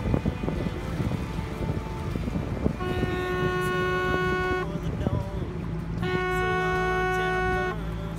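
A hand-held hunting horn blown twice: two steady, single-pitched blasts, each a little under two seconds long, with a gap of over a second between them.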